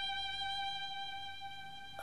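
Music: a violin holds one long high note with a slight vibrato, then stops abruptly at the very end.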